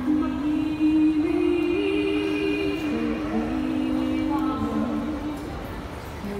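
Two women singing together into microphones in two-part harmony, their voices moving in parallel through long held notes.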